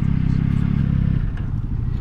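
Motorcycle engine, the three-cylinder of a Yamaha Tracer 9 GT, running at low speed, heard from the rider's seat. About a second in its sound eases off as the engine drops back.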